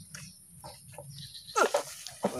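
A goat bleating: one short, wavering cry about one and a half seconds in, after a few faint rustles.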